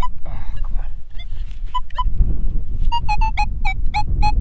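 Nokta Makro Simplex metal detector giving short electronic beeps as its coil is swept over a target: two beeps about two seconds in, then a quick run of about six near the end, a signal that reads 43–44, non-ferrous. Low wind rumble on the microphone underneath.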